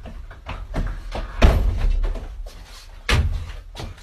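A series of bangs and thuds from a door and a man stumbling about a small room. The loudest bang comes about a second and a half in, and another strong one just after three seconds.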